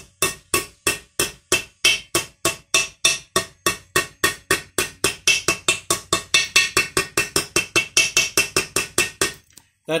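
Rapid, evenly paced hammer taps, about four or five a second, on a socket used as a seal driver, driving an oil seal into the cast housing of a Peerless 2338 transaxle until it sits flush. The tapping stops shortly before the end.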